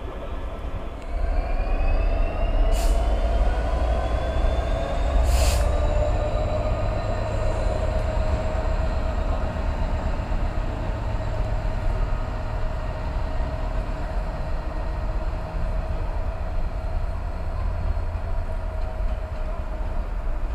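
A Class 66 diesel locomotive approaching slowly, its two-stroke EMD V12 engine giving a steady low rumble with a whine that slowly falls in pitch. Two sharp clicks come a few seconds in.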